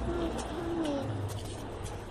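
Two faint, short, low cooing calls from a bird, within the first second, over a soft low background rumble.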